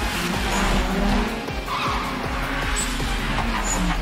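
Toyota AE86 Sprinter Trueno's engine running hard, with its tyres squealing through a corner, over Eurobeat dance music.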